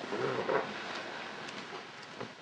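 Faint rustling and shuffling of a person getting up off a couch and moving, slightly louder in the first half-second.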